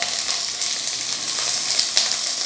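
Sliced ají amarillo peppers frying in hot vegetable oil: a steady sizzle with small crackles.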